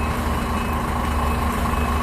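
Semi-truck's diesel engine running steadily at low revs while the rig reverses, with a steady high-pitched tone running over it.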